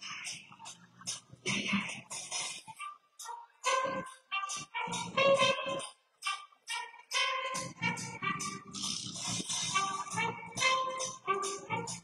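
Live rock band playing a song: a drum kit keeps a fast steady beat of about four strokes a second under acoustic and electric guitars, and the bass end drops out briefly twice.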